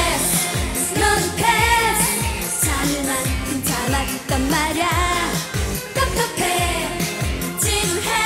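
Female K-pop group singing in Korean over a dance-pop track with a steady kick-drum beat of about two strokes a second.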